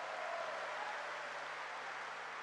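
A large crowd applauding steadily in response to a line of the speech, with a faint cheer held briefly early on.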